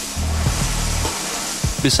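High-pressure water jet from a sewer-jetting trailer's hand lance, a steady hiss, under background music with a low bass line.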